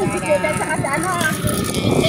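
A vehicle moving along a road: its running noise and rumble, with wind buffeting the microphone. Voices talk over it.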